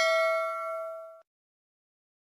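A bell ding sound effect for a notification-bell click, ringing with a clear pitch and fading, then cut off abruptly just over a second in.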